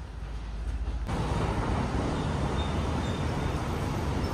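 City street traffic noise, a steady wash of passing vehicles, which jumps suddenly louder about a second in.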